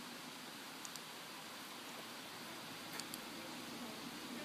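Steady faint background hiss, with a few small faint clicks about a second in and again near the end.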